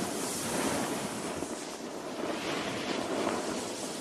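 Snowboard sliding over packed snow, a steady scraping hiss that swells and eases as the board turns, mixed with wind rushing over the microphone.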